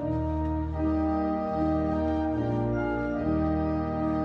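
Organ playing a slow prelude in sustained, held chords that change about once a second.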